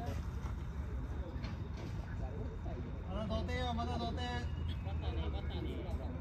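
Players' voices calling out across a baseball field, with one drawn-out shouted call about three seconds in, over a steady low rumble.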